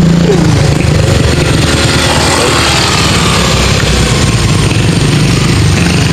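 Small motor scooter engine idling steadily close by.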